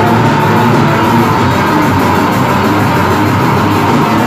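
Heavy metal band playing live: distorted electric guitars and bass over a drum kit keeping a fast, steady beat, loud and dense throughout.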